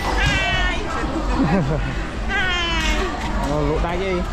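A cat meowing twice: two high, slightly falling cries, each under a second long, about two seconds apart, with people talking underneath.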